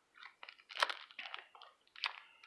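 Hockey trading cards being handled and flipped through, with a plastic pack wrapper: a run of short crisp rustles and crinkles, the loudest a little under a second in.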